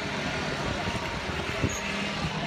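Traffic noise at a busy street crossing: a steady din of passing motor scooters and cars, with one short knock a little past halfway.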